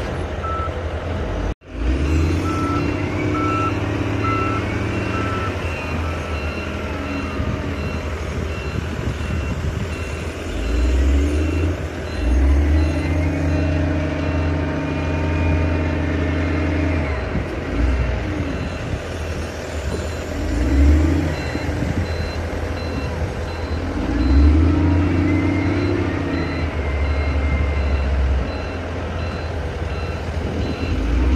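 Engine and hydraulics of a hirail material leveler working as its toothed blade drags through coal, the engine note swelling under load in surges and easing off again. A repeating electronic warning beep sounds about twice a second throughout, and the sound cuts out for a moment near the start.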